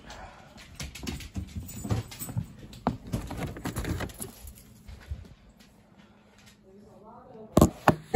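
Handling noise from a phone carried by hand: rustling and irregular clicks and knocks, quieter after about five seconds. Near the end comes a brief vocal sound, then two loud knocks.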